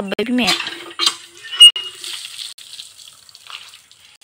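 Water splashing and things clattering on wet pebbles beside a hand pump, with a short sharp squeak about one and a half seconds in.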